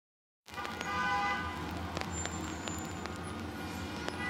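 Faint, steady low hum of a car cabin as the car moves slowly, starting about half a second in, with a brief high tone about a second in and a few light clicks.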